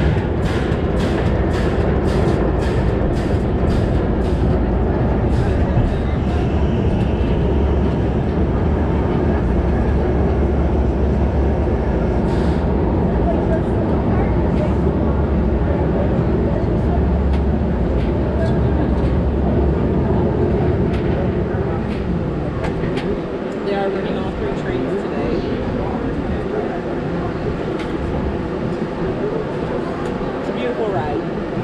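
Roller coaster train rolling slowly along its brake run into the station, with a steady low rumble from the wheels on the track. Sharp clicks come about two a second for the first few seconds, and the deep rumble eases off about twenty seconds in.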